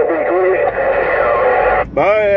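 Uniden Grant XL radio's speaker playing received voice traffic that is thin and hard to make out. The sound cuts out briefly near the end.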